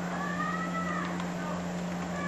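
A single drawn-out call that rises and then falls in pitch, lasting about a second, over a steady low hum.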